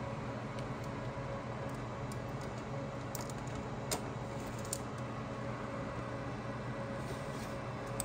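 Steady hum of rack-mounted server and network equipment fans, with a few faint clicks, the strongest about four seconds in, as a 3.5-inch hard drive in its hot-swap caddy is slid into a Dell PowerEdge R310's drive bay.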